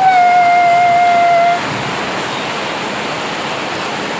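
A woman's voice holding one long, steady note for about a second and a half as a drawn-out farewell, then a steady, even rushing noise.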